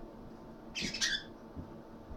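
A bird squawks briefly about a second in, two quick high calls close together.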